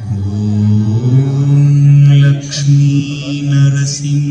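A deep male voice chanting a long, held "Om" in a devotional music track, stepping up in pitch about a second in.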